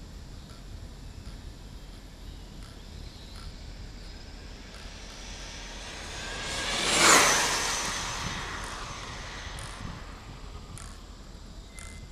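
ARRMA Notorious RC speed car running on a 5S LiPo pack and making a high-speed pass. Its electric motor whine builds for a few seconds, peaks about seven seconds in as it goes by, then drops in pitch and fades away.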